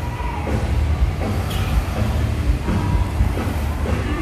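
Street traffic: cars passing close by with a steady, loud low engine and tyre rumble.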